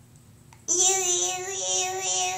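A young child's voice singing one long held note that starts abruptly about two-thirds of a second in, nearly steady in pitch, with only faint room noise before it.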